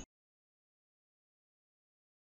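Silence: the sound track is blank, with no audible sound at all.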